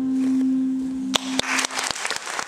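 The last chord of an acoustic guitar rings out and fades. A little over a second in, scattered claps start and quickly thicken into audience applause.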